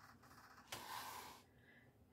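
Near silence: room tone, with one faint soft hiss lasting about half a second, a little under a second in.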